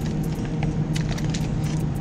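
Steady low hum of a refrigerated meat display case, with scattered light clicks and crinkles of plastic-wrapped packages being handled.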